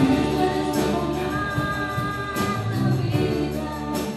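A live band playing with singing, over bass, drums, piano and guitars, with a tambourine in the mix. Long held notes come in about a second in.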